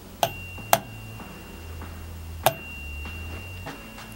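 Three sharp clicks and knocks from handling an airsoft rifle and picking its suppressor up off a table, with a thin steady high tone under them.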